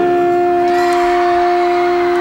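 Electric guitar feedback: one steady held tone with its octave above, sustained at an unchanging pitch without fading.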